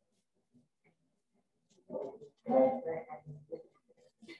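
A short burst of a person's voice about two seconds in, pitched and without clear words, lasting about two seconds.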